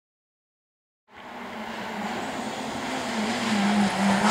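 Honda Civic rally car's engine under power, coming closer and growing louder. The sound fades in about a second in, after silence, and its pitch wavers slightly as the revs change.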